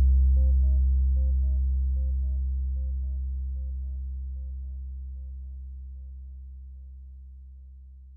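Elektron Digitakt's sound dying away after the sequencer is stopped: a deep, steady bass tone fading slowly and evenly, while a higher note pattern repeats about twice a second, ever softer, like a delay tail, until it dies out about six seconds in.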